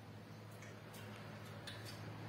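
A few faint, sharp clicks and taps from hands handling the altar decorations, over a steady low hum.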